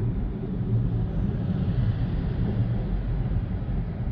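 Steady low rumble of road and engine noise heard inside a car's cabin while it cruises on a highway.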